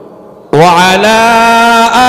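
A man's voice, amplified through a microphone with heavy echo, chanting: a fading echo tail, then about half a second in a long held melodic note on the opening 'wa' of a salawat-style phrase ('wa ... sayyidina').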